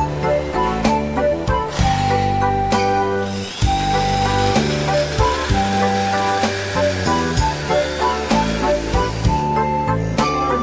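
Background music throughout. Under it, an electric drill runs for several seconds in the middle, driving a screw into the steel chain-drive frame of a mobile shelving unit.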